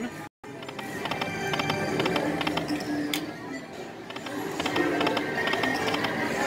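Dragon's Riches Lightning Link slot machine playing its electronic reel-spin music and chiming sound effects as the reels spin and stop, with short clusters of tinkling tones every second or so. The sound cuts out completely for a moment just after the start.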